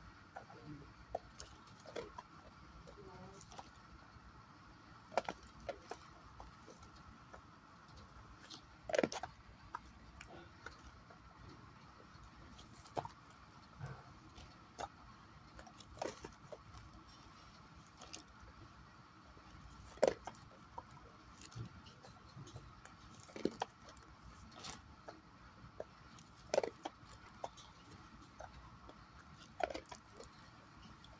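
Quiet room with a faint steady hum and scattered soft clicks and taps every few seconds. Two louder ones come about a third and two thirds of the way through.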